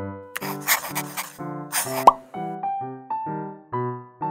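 Bouncy keyboard background music at about two notes a second, overlaid by an added sound effect: a noisy hiss-like burst lasting about a second, a shorter one, then a quick upward-sliding plop about two seconds in.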